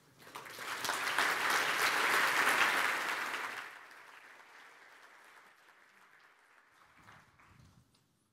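Audience applauding. The clapping swells quickly, then dies away after about four seconds, leaving a faint tail.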